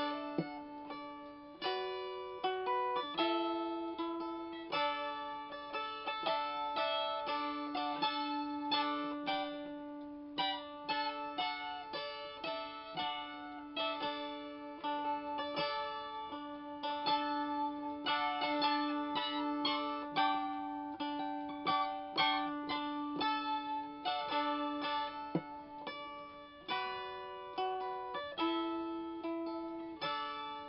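Small kit-built lap dulcimer of cherry wood with purpleheart being played: a tune of quickly picked melody notes over a steady low drone note that holds nearly throughout. The drone shifts pitch briefly a couple of seconds in and again near the end.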